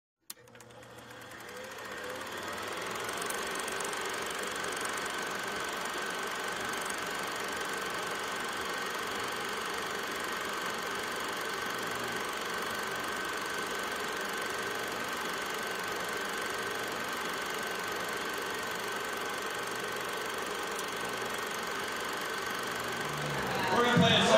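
Movie film projector running steadily. It starts with a click and fades in over the first few seconds.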